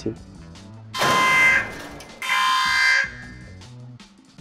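Two loud buzzer blasts, each just under a second long, about half a second apart, over quiet background music.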